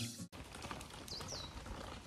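Background music cutting off right at the start, then quiet outdoor ambience with a bird chirping faintly: two short falling notes about a second in.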